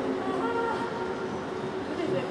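Steady hum and room noise of a large ice arena, with a few faint steady tones running through it.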